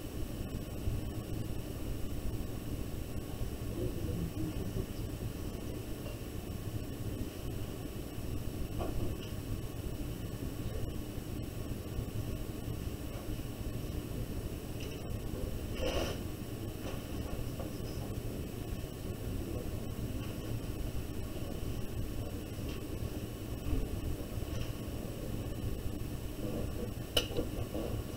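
Quiet room tone: a steady low hum and faint hiss, with a few faint ticks.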